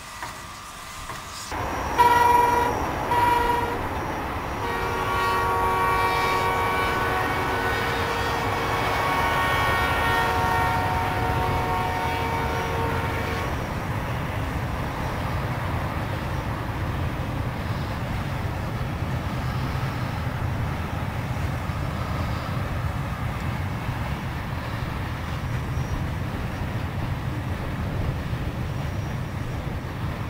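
China Railways QJ class steam locomotive whistle: two short blasts, then one long blast of about nine seconds with several notes sounding together. A steady low rumble of the freight train running follows.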